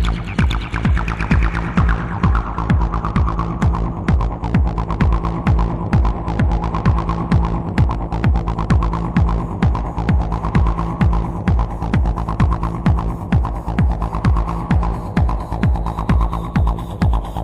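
Minimal techno track: a steady kick drum pulses about twice a second under a low hum, while a filtered synth tone sweeps downward at the start and then wavers slowly up and down.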